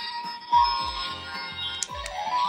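Bright electronic chime sound effect from a battery-powered toy magic wand, many shimmering tones ringing together, over background music with a steady beat.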